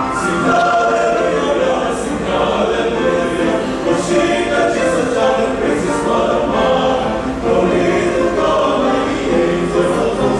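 Male choir singing a slow piece in harmony, the voices holding long notes.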